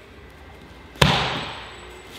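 A kickboxing kick landing on a held kick pad: one sharp smack about a second in, with a short echo dying away over about half a second.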